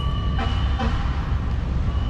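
Steady low outdoor city rumble of road traffic. A thin, steady high whine sounds for about the first second and comes back near the end.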